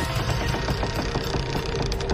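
Horror-trailer sound design: a low, steady drone under a fast, even, machine-like clicking rhythm of about six clicks a second, which crowds together near the end.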